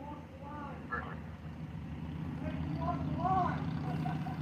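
A vehicle engine running with a low, steady hum that grows gradually louder, heard from inside a car, with faint voices in the background.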